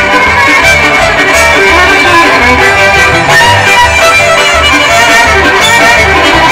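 Live bluegrass band playing: fiddle to the fore over banjo, acoustic guitar and upright bass, the bass sounding a note about twice a second.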